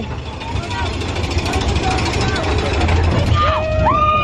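Mine-train roller coaster running along its track with a steady low rumble and rattle. Near the end, riders' voices rise into shouts.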